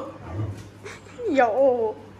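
A dog gives a short pitched cry a little over a second in; its pitch bends up and down for about half a second.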